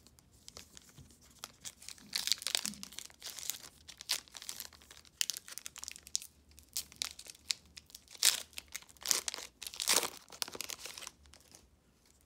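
Foil wrapper of a Topps trading-card pack being torn open at its crimped seal and crinkled in the hands: a run of sharp, irregular crackles, loudest near the end.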